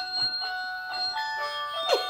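A children's sound book's electronic chip playing a short, tinny jingle of steady single notes that step from pitch to pitch: a sound button on the side panel of an Usborne noisy Santa board book.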